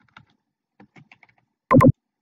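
Typing on a computer keyboard: a run of light, scattered keystrokes, then two loud, sharp clicks near the end.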